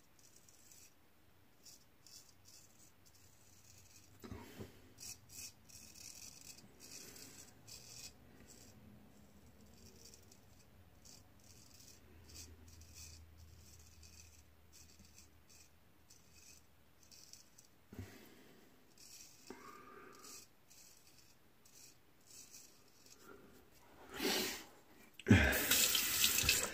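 Gold Dollar straight razor scraping through lathered stubble in short, faint strokes. Near the end a tap starts running loudly into the sink.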